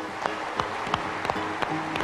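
Audience applauding over walk-on music: a dense patter of many hands clapping together with steady musical notes.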